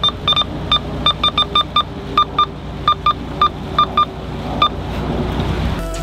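Handheld marine VHF radio beeping as its buttons are pressed to step through channels toward channel 71: a string of short, identical beeps, some in quick runs, stopping a little before five seconds. Under it the boat's engine runs steadily.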